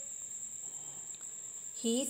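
A steady, high-pitched whine that holds one pitch without a break, under a pause in speech; a voice begins just before the end.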